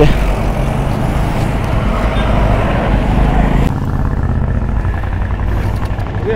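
Road traffic noise: a motor vehicle running past on the road, with a steady low rumble. The sound changes abruptly a little past halfway, its higher part dropping away.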